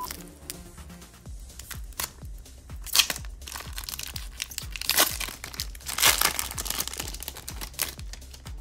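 A foil Pokémon card booster pack being torn open and crinkled by hand, with the loudest rips about three, five and six seconds in.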